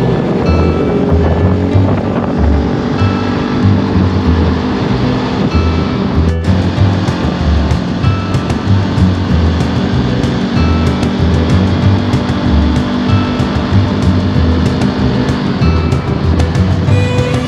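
Background music with a steady beat, laid over the steady drone of a Honda CB500X parallel-twin motorcycle and wind rush at expressway speed.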